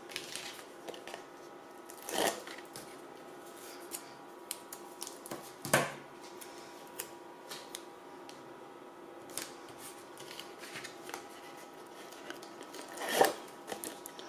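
Hands handling cardstock and strips of adhesive tape: paper rustling, sliding and tapping on a craft mat in short scattered bursts, with louder rustles about two, six and thirteen seconds in.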